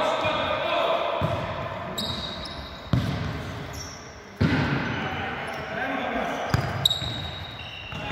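A futsal ball being kicked and bouncing on a sports-hall floor, sharp knocks that echo in the hall, at about three, four and a half, and twice around six and a half to seven seconds in. Players' voices call out, and shoes give short high squeaks on the court.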